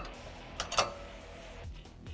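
A single metallic clink from a trailer safety chain being hooked to the truck's hitch, about three-quarters of a second in, with a short ring after it. Background music plays throughout.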